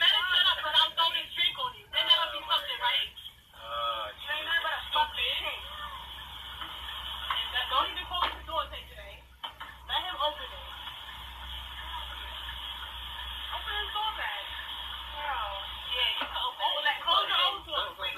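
Voices from a dashcam recording played back through laptop speakers: a woman and others arguing inside a car, sounding thin like a phone, over a steady low hum.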